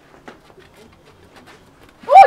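A quiet lull with faint bird calls, like a dove cooing, and a few soft clicks.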